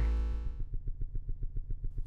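Synthesis Technology E350 Morphing Terrarium wavetable oscillator running in a low register. A low steady drone turns, about half a second in, into a fast rhythmic pulsing.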